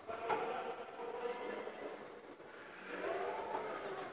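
Jungheinrich EKS 110 electric order picker whining as its operator platform lowers down the mast. The pitch wavers and swells up and back down near the end.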